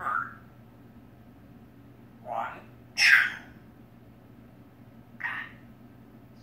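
African grey parrot making short calls: three brief squawk-like sounds about two, three and five seconds in, the middle one the loudest and shrillest.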